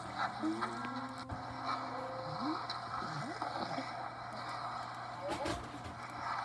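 Video soundtracks playing on a computer and picked up through the room: scattered voice-like sounds with arching, rising and falling pitch over a steady low hum.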